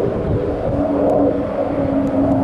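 Military fighter jet's engine droning overhead: a loud, steady rumble with a held humming tone.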